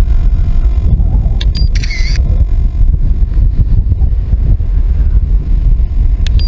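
Strong wind buffeting the microphone, a loud, uneven low rumble. About a second and a half in, a brief burst of clicks and a short high chirp.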